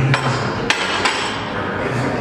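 Steel barbell being racked onto the squat rack's hooks: three sharp metal clanks within the first second or so.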